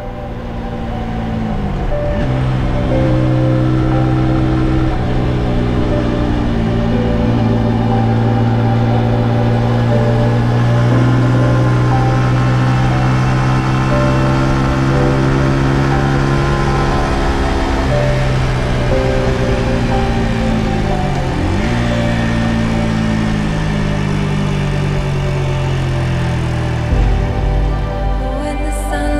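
Single-cylinder engine of a Brixton Cromwell 125 motorcycle running steadily at road speed, its revs dipping and picking up again about two seconds in and once more past the middle, with background music.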